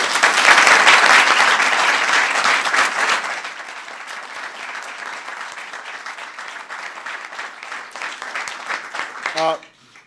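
Audience applauding, loudest for the first three seconds, then dying down to lighter, thinner clapping.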